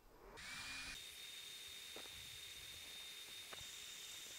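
Faint, steady high-pitched whine of a portable laser engraver running an engraving job, with a couple of faint clicks.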